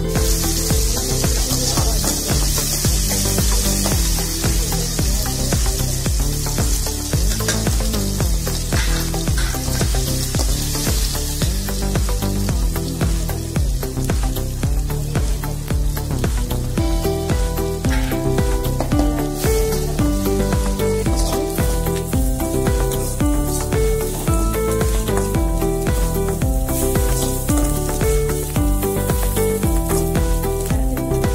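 Tomatoes, garlic and curry leaves sizzling in hot oil in an aluminium kadai, with a metal slotted spatula scraping the pan as they are stirred; the sizzle is strongest in the first dozen seconds and eases after that. Background music plays throughout.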